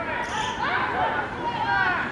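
Women rugby players shouting and calling to each other around a ruck, several high voices overlapping in short calls.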